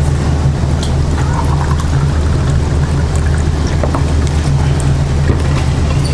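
Water poured from an insulated pitcher into a plastic tumbler, with a few light clicks. A steady low machine hum runs underneath and is the loudest sound.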